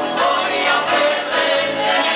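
A live rock band playing a song, with voices singing over bass guitar, guitars, keyboard and drums.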